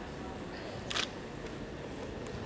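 A single short, sharp click about a second in, over steady low background noise.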